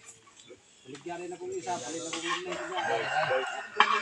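A rooster crowing, one long call, with people talking in the background; a sharp knock near the end.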